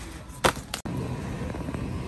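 Two short sharp sounds about a third of a second apart, the first the loudest. The sound then cuts off abruptly and gives way to steady supermarket background noise.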